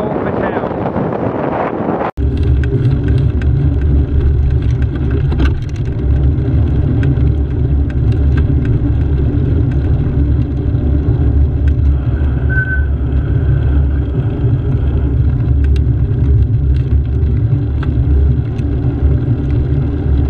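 Steady low rumble of riding noise, wind on the microphone and the vehicle's drive, picked up by a handlebar-mounted camera while riding through a roundabout. There is an abrupt cut about two seconds in.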